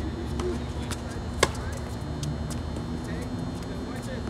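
Tennis ball struck by rackets during a rally: one sharp, loud racket hit from close by about a second and a half in, with fainter hits and bounces from the far end of the court. A steady low hum runs underneath.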